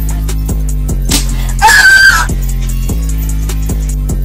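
Background music with a heavy bass and a steady beat of about two a second. About halfway through, a loud, high scream cuts in for about half a second.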